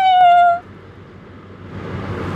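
A woman's high-pitched held squeal, sliding slightly down in pitch and breaking off about half a second in.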